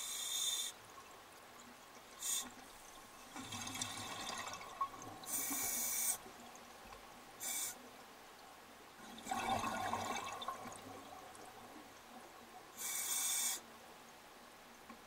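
A scuba diver breathing underwater through a regulator: short hissing inhalations and longer bubbling exhalations, one breath after another every few seconds.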